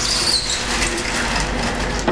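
A conventional urinal flushing: a steady rush of water through the flush valve, with a faint falling whistle near the start.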